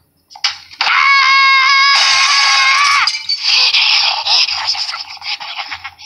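A woman's long, high-pitched scream, held on one steady note for about two seconds. From about two seconds in it is joined by crashing and breaking noises that go on for a few more seconds and then die away.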